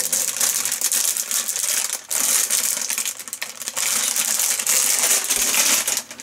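Plastic coffee-bag packaging crinkling and crackling as it is handled, with many small crackles packed close together. It pauses briefly about two seconds in.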